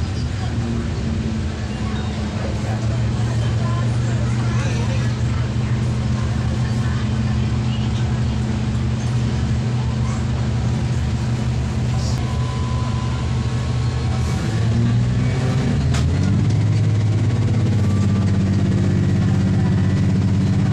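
The Cummins NT855 diesel engine of an MCW 302 diesel railcar drones steadily under the moving train, heard from inside the passenger cabin along with wheel and track noise. About fifteen seconds in, the engine note shifts and runs a little louder.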